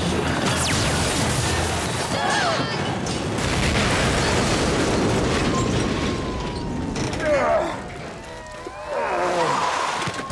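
Cartoon sound effects of a giant Ferris wheel toppling and crashing down: a long, loud rumbling crash with debris, which dies away about eight seconds in.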